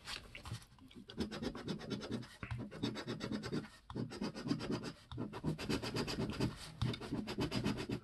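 A large copper coin scratching the latex coating off a scratch-off lottery ticket in runs of quick back-and-forth strokes, with short pauses between runs.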